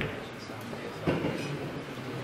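Snooker ball rolling across the cloth with a low rumble, then knocking sharply against a cushion or another ball about a second in.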